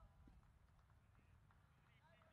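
Near silence: faint distant voices from across the ground and a few soft, scattered taps.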